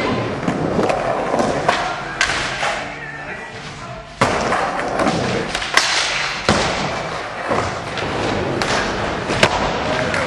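Skateboard wheels rolling over wooden ramps, with repeated sharp clacks and thuds as the board is popped, hits obstacles and lands. The rolling fades down for a moment and then comes back abruptly about four seconds in.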